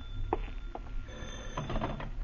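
Telephone sound effect from an old-time radio drama, as the ringing phone is answered: a few faint clicks, then a short burst about a second and a half in.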